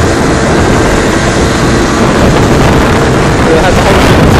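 Moped ridden along a street, its small engine running under a loud, steady rush of riding wind buffeting the microphone.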